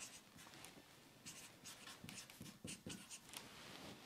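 Marker pen writing on the board, a run of short, faint scratchy strokes.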